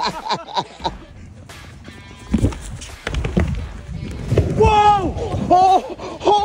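A board carrying a person rolling along a row of inflatable exercise balls: a run of low rubbery thumps and rumbling from about two seconds in, with laughter at the start and long held cries over it near the end.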